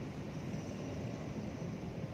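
Steady, low background hiss and hum of outdoor ambience, with no distinct events.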